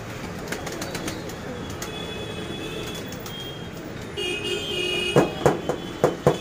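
Domestic pigeons cooing over steady background noise, with a few short, loud notes near the end. A steady tone comes in about four seconds in.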